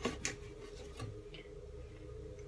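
Light clicks and ticks from a gift box being handled and opened: a couple of sharp ticks near the start and another about a second in.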